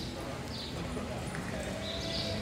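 Indistinct background voices and general arena noise, steady throughout, with faint sounds of a horse and cattle shifting on the dirt floor.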